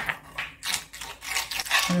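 A wooden spoon stirring a thick soybean-paste marinade in a ceramic bowl: repeated short scraping and rubbing strokes against the bowl, several a second.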